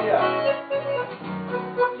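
Acoustic guitar and piano accordion playing together, the accordion holding long steady notes under the guitar, with a lower held note in the second half.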